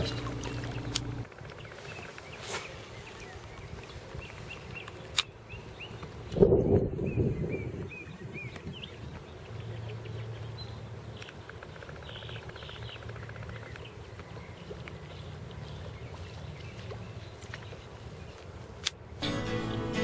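Quiet outdoor sound from a kayak on a lake: faint bird chirps, a few small clicks, and one brief louder noise about six seconds in. Near the end the sound changes abruptly and guitar music comes in.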